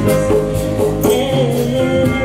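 Live gospel worship music: a choir and a female lead singer singing with instrumental accompaniment, a held sung note with vibrato from about a second in.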